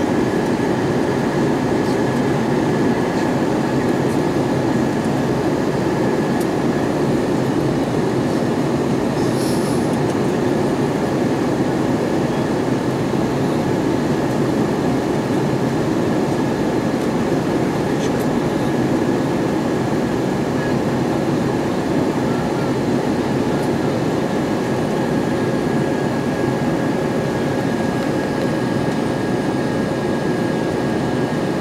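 Airliner cabin noise inside an Airbus A320-232 during its descent: the steady rush of air and the hum of its IAE V2500 turbofan engines, heard from a seat beside the wing, with a thin steady high tone running above it.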